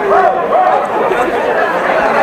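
Crowd chatter: many voices talking at once.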